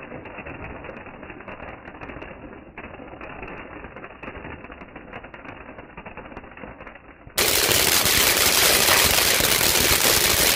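Ground crackling fountain firework (a three-jet peacock crackling fountain) spraying sparks with dense, continuous crackling. For the first seven seconds the crackle is muffled and moderate, then it jumps abruptly to loud, sharp, full crackling.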